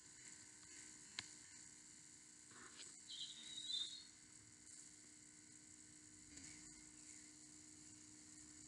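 Near silence: faint steady hiss and hum of outdoor background, with a single click about a second in and a brief faint high chirp about three seconds in.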